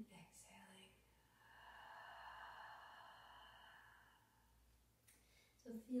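A slow exhale through the mouth, a soft rush of breath lasting about three seconds that swells and fades, at the end of a paced inhale–exhale breathing exercise.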